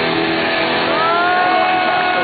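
Punk rock band playing live at full volume: a dense wall of distorted electric guitars, with a held, slightly bending high note coming in about a second in.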